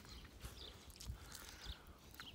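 Faint movement noise: soft, irregular low thumps and light rustling from a handheld phone being moved about on snow.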